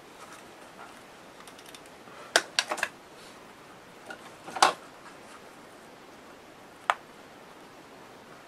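A few sharp clicks and taps of small craft pieces and tape being handled on a worktable: a quick cluster about two and a half seconds in, the loudest one near the middle, and a single click near the end.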